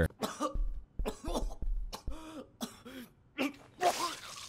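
A man chuckling in several short, separate bursts, with a brief "ooh" near the start.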